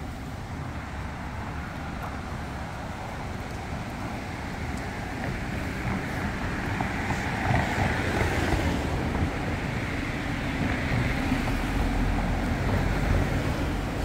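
Road traffic on the street beside the bridge: a steady hiss of cars going by, swelling as vehicles pass about halfway through and again near the end.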